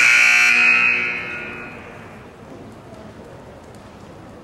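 Show-jumping start signal: a loud electronic buzzer tone sounds once, held for about a second and then fading away, signalling the rider to begin the round.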